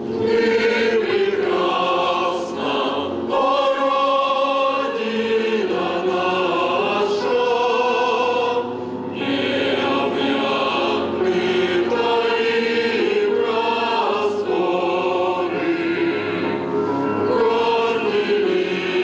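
Mixed choir of women's and men's voices singing together in sustained phrases, with a brief break between phrases about nine seconds in.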